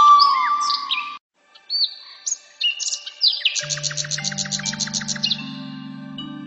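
Flute music that cuts off about a second in; after a brief gap, songbird chirps and whistles, then a fast trill of about eight notes a second, over soft sustained music chords that step upward.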